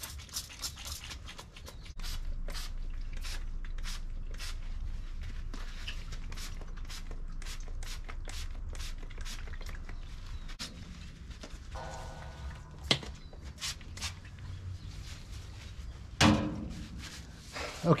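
Trigger spray bottle squirting oil into a steel smoker firebox in quick repeated pumps, a couple a second, each a short hiss.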